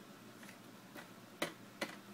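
Plastic wheel of a baby's ride-on toy clicking as a baby's hand bats at it: a few sharp clicks, the two loudest close together in the second half.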